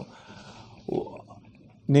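A pause in a man's speech, with faint room hiss and one short breathy sound from him about a second in; his voice comes back near the end.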